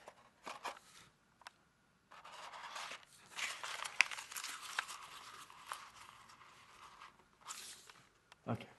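Folded origami paper crinkling and rustling as it is handled: a few short crackles at first, then about five seconds of continuous crackly rustling with sharp clicks as the pleated spiral model is opened out and wrapped back up.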